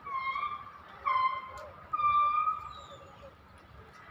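An animal calling: three drawn-out, pitched calls about a second apart, each bending slightly in pitch, the third the longest.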